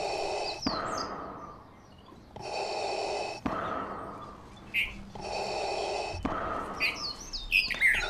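Darth Vader's mechanical respirator breathing, a slow hissing in-and-out that repeats about every two and a half seconds. Small birds chirp between the breaths, most busily near the end.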